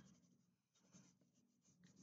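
Near silence, with faint scratching of a wax crayon rubbed back and forth on paper.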